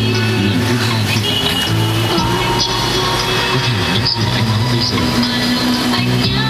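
Music playing loudly through a car's audio system, with strong, sustained bass notes.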